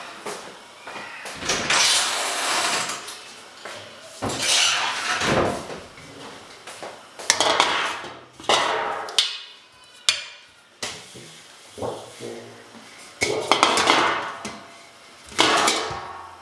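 Kitchen handling noise: a series of irregular clattering and scraping bursts, about eight of them, a second or two apart.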